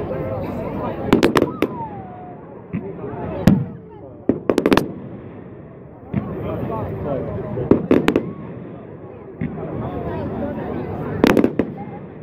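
Fireworks going off in clusters of sharp bangs: a few about a second in, more between three and five seconds, another group around eight seconds and a last burst near the end.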